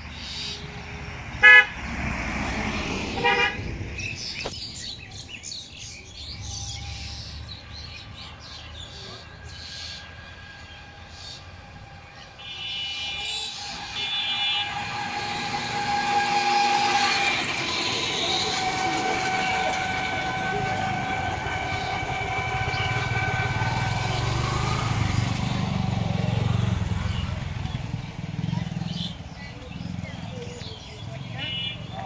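Road traffic with vehicle horns: short toots, the loudest about a second and a half in and two more near the middle, then a long steady tone as motor vehicles pass with a low engine rumble.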